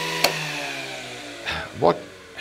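An electric motor in the wartime radio set hums steadily, then a switch clicks about a quarter second in. The hum slides down in pitch and fades away as the motor runs down after being switched off.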